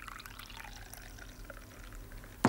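Tea being poured from a china teapot into a china cup, a steady trickling pour.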